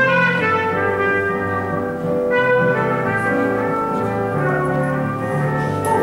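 Trumpet playing a jazz melody line over piano accompaniment, moving through a series of held notes with a brief break about two seconds in.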